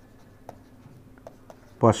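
Faint light taps and scratches of a stylus writing on a tablet screen, a few small clicks spaced through a quiet stretch. A man's voice starts just before the end.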